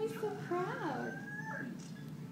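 A high-pitched voice making wordless sounds that glide up and down in pitch, with one longer held note near the middle.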